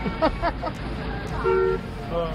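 A short car horn honk, two steady pitches sounding together, about one and a half seconds in, after a voice exclaims "oh".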